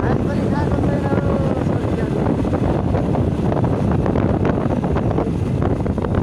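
Wind buffeting the microphone over the steady noise of a vehicle on the move, with faint voices in the first couple of seconds.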